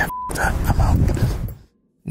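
A short single beep tone, then rough, rumbling handheld-camera field audio from a night walk through a cemetery. The field audio cuts out abruptly about a second and a half in.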